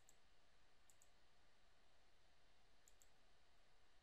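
Faint computer mouse clicks over near-silent room tone. They come as three quick pairs: at the start, about a second in, and about three seconds in.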